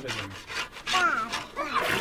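Several rough scrubbing strokes as a pot is scoured by hand, with a short high-pitched voice in the middle.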